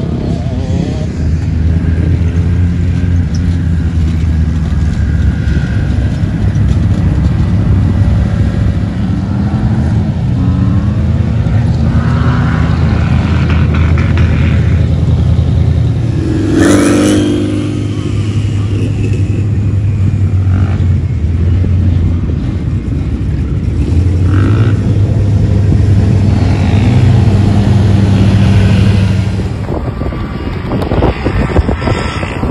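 Engines of off-road vehicles running and revving on sand: a steady, loud engine drone that rises and falls in pitch now and then. There is one short burst of noise about 17 seconds in.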